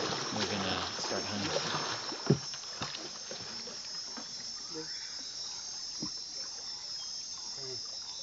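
Steady high-pitched chorus of night insects in the rainforest. A sharp knock comes a little over two seconds in, and a few fainter knocks follow.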